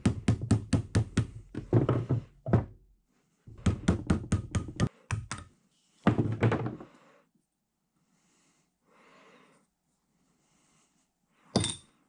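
Brass hammer tapping a screwdriver wedged under the stuck bezel of a cast-iron overarm support's oil sight gauge, driving it loose. The taps are sharp and quick, about five a second, in several bursts over the first seven seconds, then stop. One more knock comes near the end.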